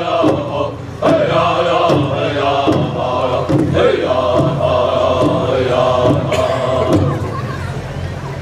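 Southern-style powwow drum group singing a flag song: men's voices chanting together over regular unison strokes on a large powwow drum. The voices fall away near the end as the song closes.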